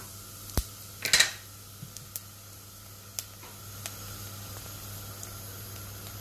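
Mustard and fennel seeds frying gently in sesame oil in a clay pot: a faint steady hiss with scattered small ticks of popping seeds. There is a sharp click and a short rustle about a second in.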